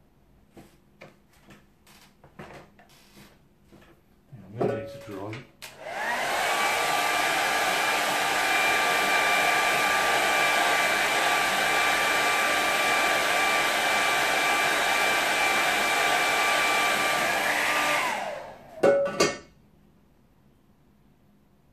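Handheld hair dryer drying a wet watercolour painting. It switches on about six seconds in with a rising whine as the motor spins up, runs steadily with a rush of air for about twelve seconds, then winds down as it is switched off. Short knocks come just before it starts and just after it stops.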